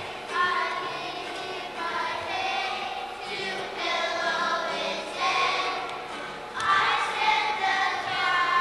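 A children's choir singing together.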